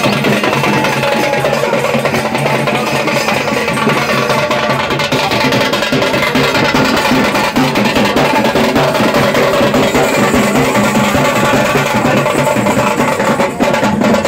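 Loud music with drums and other percussion playing a busy, continuous rhythm over steady held low notes.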